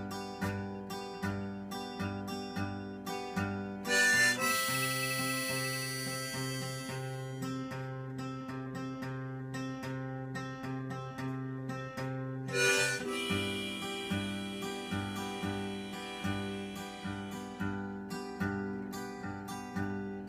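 Harmonica in a neck rack played over a steadily strummed acoustic guitar, an instrumental introduction. The guitar strums alone at first; the harmonica comes in about four seconds in with long held notes.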